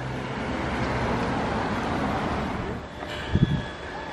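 Street traffic noise: an even rush like a passing car that swells slightly and fades about three seconds in, followed by a brief low thump near the end.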